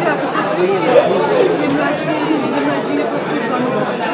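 Speech over the chatter of a crowd in a large, busy hall.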